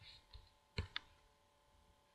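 A few faint, short clicks over quiet room tone with a faint steady hum, the loudest two close together a little under a second in.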